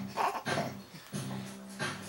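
A baby making short vocal sounds, a few brief coos or grunts, over music playing in the background.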